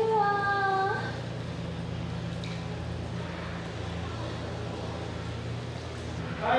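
A woman's voice holding one drawn-out note that rises and then levels off, ending about a second in. After it, only a steady low hum remains.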